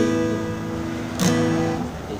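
Acoustic guitar strumming an A sus2 chord: the first strum rings at the start, and a second strum comes about a second in and is left to ring.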